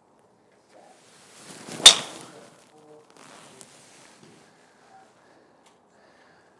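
Golf driver swung at full speed: a rising swish through the air ending in a sharp crack as the clubhead strikes the teed ball about two seconds in, followed by a fading whoosh.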